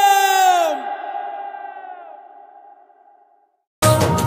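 Background song ends on a long held note that slides down in pitch and fades away to silence; a new Bollywood-style song cuts in abruptly just before the end.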